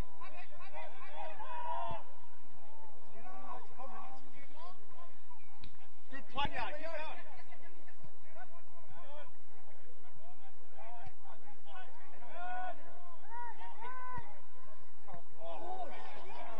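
Footballers shouting and calling to each other across the pitch, with a louder shout of "yeah" about six and a half seconds in. A few short thumps sound, one of them right before that shout.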